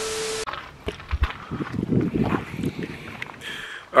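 A half-second burst of TV-static hiss with a steady beep under it, used as a glitch transition, cutting off sharply. Quieter, uneven background noise follows.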